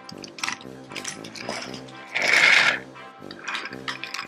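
Wooden toy trains clicking and rattling along wooden track under light background music, with one louder hiss-like rush a little over two seconds in.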